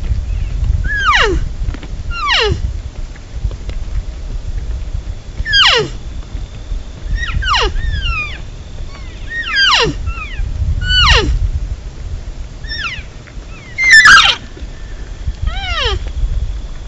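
A series of about nine cow elk mews, each a short call sliding steeply downward in pitch, spaced a second or more apart, the loudest near the end, over a low rumble.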